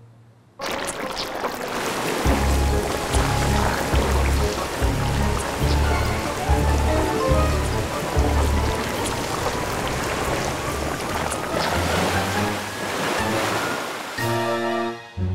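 Cartoon water-jet sound effect: a continuous rushing spray of water, starting about half a second in, over background music with a repeating bass line.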